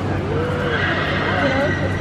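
A horse whinnying: one high call about a second long, starting a little under a second in.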